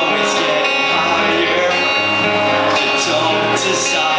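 Live song: acoustic guitar strummed through a small amplifier, with a male voice singing into a microphone over it.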